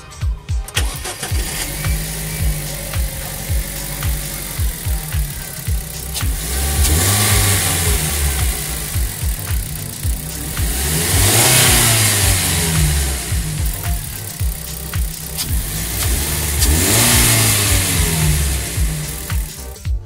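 DFSK Gelora's 1.5-litre DK15-06 petrol four-cylinder starting up about a second in and settling into a steady idle. It is then revved three times, each rev rising and falling over a couple of seconds.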